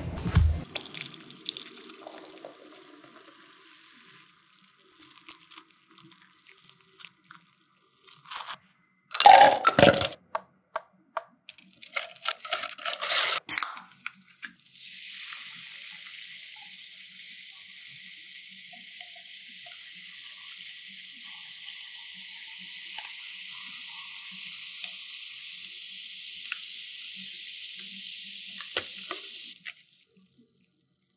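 Drink-making handling sounds: a thump at the start, then clinks and clatter of cup and fruit. About halfway through, a steady fizzing hiss begins and carries on: the sparkling tanghulu ade fizzing in the glass.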